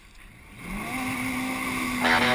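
Yamaha WaveRunner personal watercraft engine speeding up as the rider pulls away. It starts faint, then about half a second in it grows louder with a rising pitch that levels off into a steady note.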